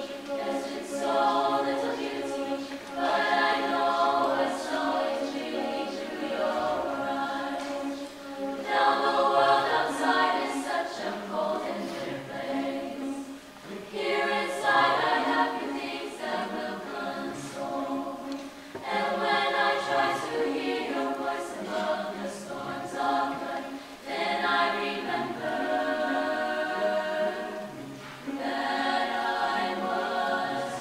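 Mixed chamber choir of male and female voices singing in sustained, multi-part phrases, with a short dip between phrases about every five seconds.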